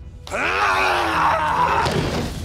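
A man's loud, strained groan, cutting in suddenly about a third of a second in and held for over a second as a fight breaks out, with a sharp knock near the end, over a film score.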